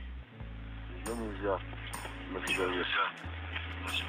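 Space-to-ground radio channel with a steady hiss and a low electrical hum, carrying faint voices about a second in and again near three seconds. The hum cuts out briefly twice.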